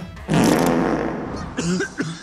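Animated-film fart gun sound effect: one loud, spluttering blast that starts a moment in and fades over about a second.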